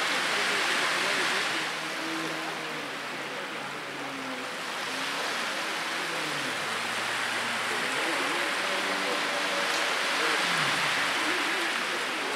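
A stand-up jet ski's engine heard from a distance, its pitch rising and falling with the throttle, under a steady hiss of wind and water spray.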